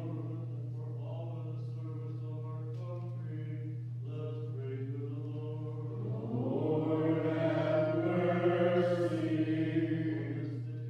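Unaccompanied Byzantine liturgical chant: voices singing softly for about six seconds, then swelling louder to the end, over a steady low hum.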